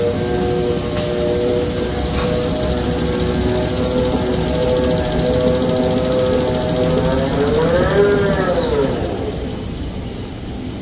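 Toilet paper rewinding machine running, its drive giving a steady whine over the clatter of the rollers. About eight seconds in, the whine's pitch rises and then falls away and fades as the drive slows.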